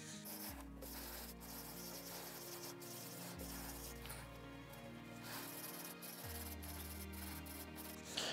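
Faint rubbing of a cloth wiping spirit-based stain into a rosewood fretboard. Soft background music plays under it, its low chords changing about every three seconds.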